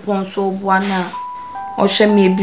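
A woman speaking for about a second, then background music with a few held single electronic tones.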